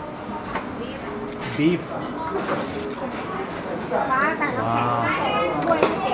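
Mostly voices: a brief spoken word early on, then high-pitched chattering voices from about four seconds in. A few sharp metal clinks of a mesh noodle strainer against the stainless pot.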